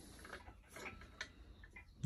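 Faint, scattered light clicks of a steel lifting chain on a folding two-ton engine crane as it is handled.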